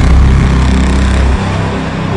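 Loud sound-effect hit in an edited soundtrack: a noisy rumble with heavy deep bass that drops away about one and a half seconds in, leaving a softer rumble over low music tones.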